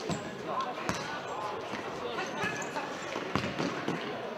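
Futsal ball being kicked and bouncing on a sports hall floor: several dull thuds, over people talking and calling out in the hall.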